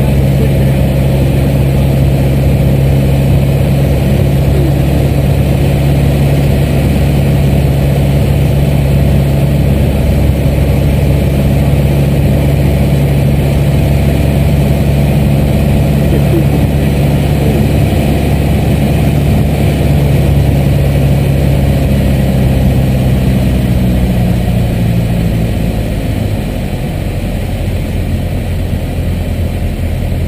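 Piston engine and propeller of a single-engine light aircraft heard inside the cabin, a steady low drone. About 25 seconds in, power is pulled back: the engine note drops lower and quieter, as on the descent to land.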